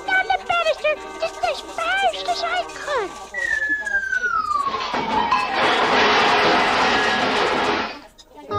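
High, pitch-bending voices or music for about three seconds, then a long falling whistle-like tone, then about three seconds of dense hissing noise that cuts off suddenly.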